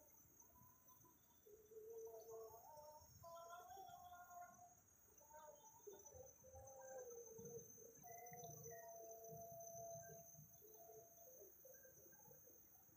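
Faint whistled calls of forest birds: many short notes and a few held tones, some sliding in pitch, overlapping throughout over a steady high hiss.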